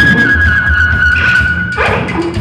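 Live experimental noise music on electronics and drums: a held high, slightly wavering tone over a dense low rumble. The tone breaks off near the end into a burst of noise.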